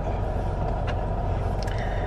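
Steady noise inside a car cabin: the engine running with a low hum, under the air conditioner blowing.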